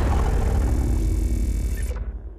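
Logo-ident sound effect: a deep rumble with a held low drone. Its upper layer cuts off near the end, leaving the low rumble to fade.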